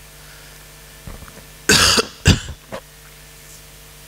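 A person coughing: one loud cough a little under two seconds in, a second, shorter cough right after it, then a smaller throat sound.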